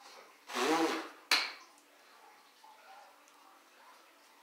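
A loud, breathy, half-voiced exhale lasting about half a second, followed soon after by a single sharp knock.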